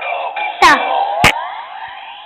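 Yo-kai Watch toy playing its electronic summoning jingle through its small speaker, with sliding synthesized notes, as a Yo-kai Medal is read. Two sharp clicks come about half a second and a second and a quarter in, and the jingle fades toward the end.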